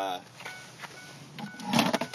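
Brief handling noise near the end: rustling with a few knocks as things are shifted around on a car's back seat.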